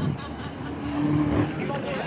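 Outdoor city ambience: people talking in the background and a vehicle passing on the streets below, loudest about a second in.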